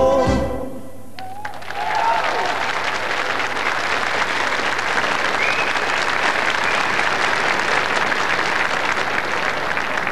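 A folk band with accordions ends its song right at the start, and after a brief lull a studio audience applauds steadily.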